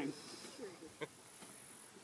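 A brief, quiet laugh and faint voices in the open air, over a steady high hiss, with a single sharp click about a second in.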